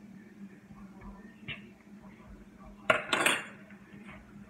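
A clatter of kitchenware: a sharp knock about three seconds in, followed at once by a brief rattling clatter, the loudest thing here. Before it there are only faint small noises.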